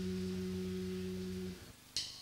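The band's last note ringing out: a steady low held chord that cuts off about three-quarters of the way in. Near the end comes one sharp stick click, the first of an evenly spaced series.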